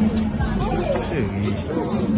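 Indistinct chatter of several voices talking at once, over a steady low hum.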